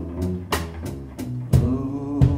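Live band music: a plucked upright double bass line with drums and keyboard, a cymbal stroke about half a second in, and a held sung note coming back in near the end.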